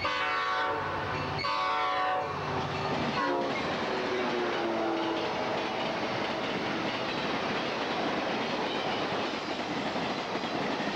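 Amtrak passenger train passing at speed: the locomotive horn blows in two blasts, and its pitch drops as the locomotives go by. After that comes a steady rush of passing passenger cars with the clickety-clack of wheels over the rail joints.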